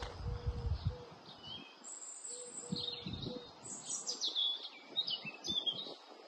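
Small birds chirping, a series of short, high calls that come thickest in the second half. A low rumble of handling or wind noise sits under the first second.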